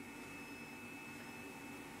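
Semi-automatic flatbed screen-printing press running as its squeegee carriage makes a print stroke across the screen: a faint, steady machine hum and hiss with a thin high whine.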